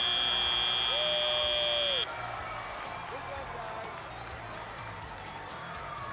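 Electronic end-of-match buzzer of a FIRST Robotics Competition field, a loud steady high-pitched tone that cuts off about two seconds in. A large arena crowd's noise carries on after it.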